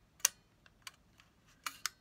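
Small mechanical clicks from the Agfa Isola I folding camera's aperture setting being worked by hand: four sharp, irregularly spaced clicks, the first the loudest.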